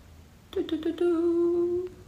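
A woman's voice: a few short syllables about half a second in, then one steady hummed "mmm" held for about a second.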